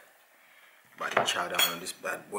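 A metal fork clinking and scraping against a dinner plate, starting with a sharp clink about a second in after a quiet first second.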